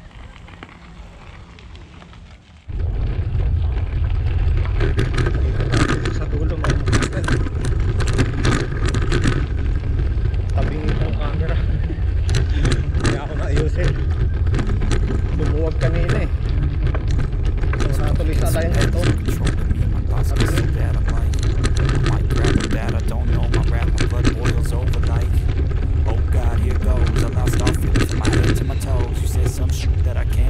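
Bicycle riding along a gravel trail: heavy wind rumble on the camera microphone with tyres crackling over the gravel, starting abruptly about three seconds in and then continuing steadily.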